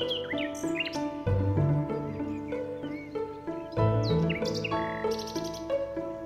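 Birds chirping over calm instrumental study music: short high sweeping chirps cluster near the start and again about four seconds in, with a quick trill around five seconds, while the music holds soft sustained notes with a low note every two and a half seconds or so.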